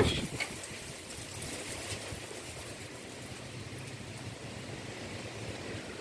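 Wind rustling the leaves of trees, a steady soft rush of noise.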